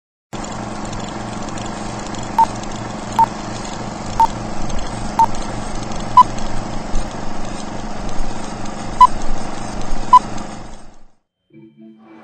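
Film countdown leader sound: a steady, whirring film projector with a short high beep about once a second, several beeps with a gap in the middle. It all stops abruptly about a second before the end.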